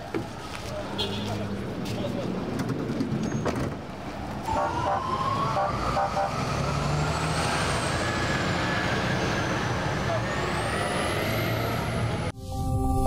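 Emergency vehicle siren wailing, coming in about four seconds in with a slow rise and fall in pitch, over the low running of vehicle engines.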